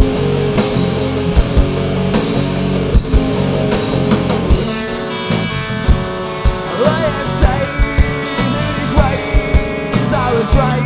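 Live rock band playing a song: electric guitars, bass and drums, with sharp drum hits throughout and bending melodic lines coming in about halfway through.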